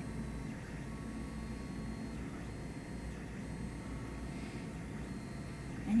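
Steady low room noise, an even hum without distinct knocks or strokes.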